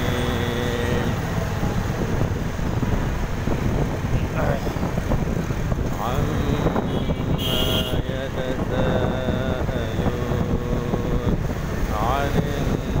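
Steady road and engine noise from riding through city traffic, with wind buffeting the microphone. A person's voice with long held notes runs over it.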